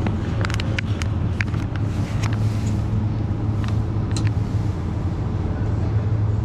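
Steady low hum of supermarket refrigerated display cases, with crinkling and clicking of a plastic pack of smoked fish being handled, mostly in the first two seconds and again around four seconds in.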